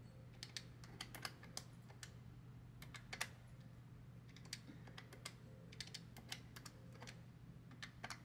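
Paper banknotes being thumbed through one by one while a stack of cash is counted: faint, irregular crisp flicks, a few a second, over a low steady hum.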